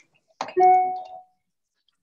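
A single chime: a short click, then one ringing ding that fades away within about a second.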